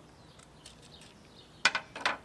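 Handling noise: a few faint ticks, then two sharp clacks near the end as a crossbow arrow and a tape measure are set down against a pickup's tailgate.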